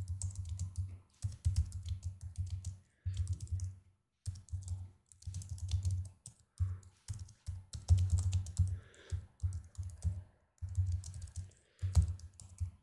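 Computer keyboard typing, fast runs of keystrokes broken by short pauses.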